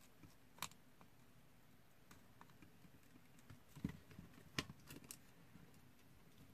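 Near silence with a handful of small clicks and taps from a circuit board, wires and a soldering iron being handled, the loudest two about four and four and a half seconds in.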